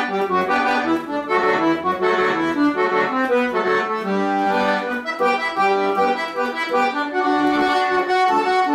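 Piano accordion played solo: a melody of short, quickly changing notes over sustained lower notes, with no break.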